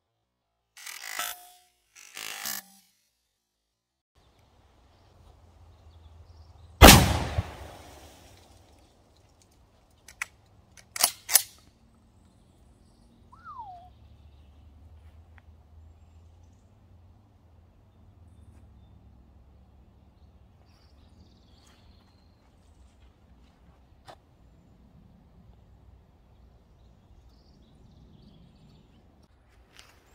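A single blast from a Dickinson Commando 12-gauge pump-action shotgun firing a one-ounce slug, about seven seconds in, with a short ringing tail. Three or four seconds later come a few sharp clacks, and there are brief handling noises near the start.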